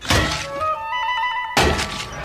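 Commercial soundtrack: a sudden thunk opens a short run of stepped, rising music notes, and a second thunk comes about a second and a half in.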